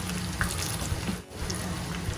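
Hot oil sizzling and crackling steadily in a small pan as shallots, curry leaves and green chillies fry for the tempering of a Kerala chicken curry, with a metal spatula stirring through it.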